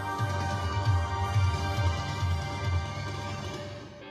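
Music with a pulsing bass beat playing over the car's stereo speakers, streamed from a phone; it fades lower over the last second.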